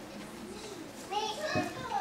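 Indistinct chatter of people in a hall. About a second in, a child's high-pitched voice rises over it.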